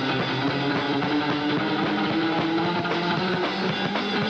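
Live rock band with an electric guitar playing lead over a drum kit; the guitar holds one long note through the middle that bends slightly upward.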